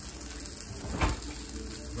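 Faint, steady sizzling of food cooking on an electric griddle, with a single sharp knock about a second in.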